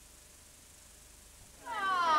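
Near silence with faint tape hiss. About one and a half seconds in, a high-pitched voice starts, its pitch sliding downward.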